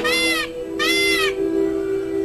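Indian peacock calling in a quick series of short, loud calls, two in this stretch about half a second apart, the series stopping a little over a second in.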